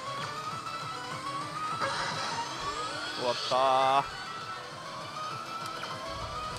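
Pachislot machine playing its bonus music and rising effect tones on the last game of a bonus round, over the din of the pachinko hall. A loud, drawn-out, wavering voice sounds about three seconds in and cuts off suddenly.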